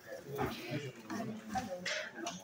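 Indistinct chatter of several people talking close by.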